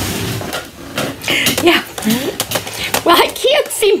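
Voices talking, the words indistinct, with a short scuffing noise at the very start.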